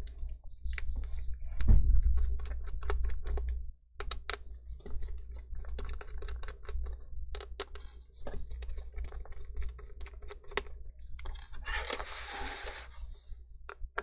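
Irregular small clicks and taps of a screwdriver and tiny hinge screws being handled against a laptop's metal chassis, with a brief scraping burst near the end and a steady low hum underneath.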